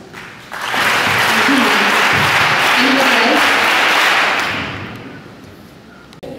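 A large audience of schoolchildren applauding, starting about half a second in and dying away over the last second or two.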